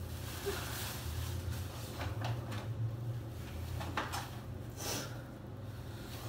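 Tissue paper and a paper gift bag rustling as the gift is unwrapped, with several short crackles of the paper around two, four and five seconds in.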